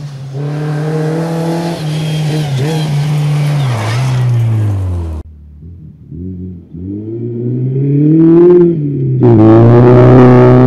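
Rally car engine at full throttle on a gravel stage, passing and falling in pitch as it goes by, until the sound breaks off abruptly about five seconds in. Then another run: the engine revs up, shifts through the gears and grows louder as it approaches.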